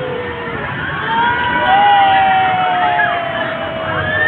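Riders on a spinning chain-swing ride letting out long, held screams that slowly fall in pitch, several voices overlapping: one trails off in the first half second, and new ones start about a second in and again near the middle, over a steady background din.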